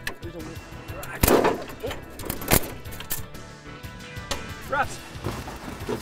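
Two sharp knocks, a little over a second apart, from hand tools working on a car engine being stripped for parts in a scrapyard.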